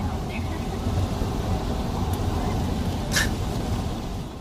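Steady low rumble of road and engine noise inside a moving car's cabin, with one short hiss about three seconds in.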